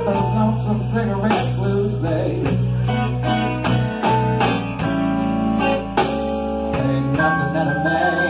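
Live blues band playing: electric guitar lines over bass, drum kit and keyboard, with regular drum hits keeping the beat.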